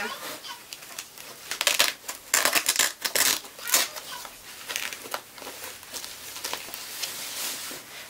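Rustling and crinkling in irregular bursts as an electric breast pump is pushed back into its fabric tote bag and the bag is handled.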